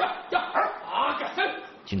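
A Kunming dog (Chinese police shepherd) barking several times in quick succession, excited and jumping up at its handler for its reward ball.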